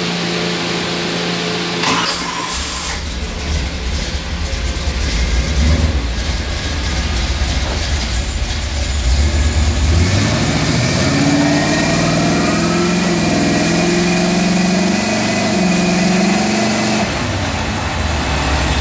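ATI Max Duty Turbo 400 automatic transmission with a bolt-together lockup converter running on a transmission dyno and shifted through first, second and third gears. A single clunk comes about two seconds in, then a steady low rumble. From about ten seconds in a gear whine rises in pitch and then holds.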